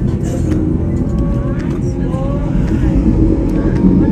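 Gornergrat electric cog railway train running, a steady low rumble heard from inside the carriage, with faint voices over it.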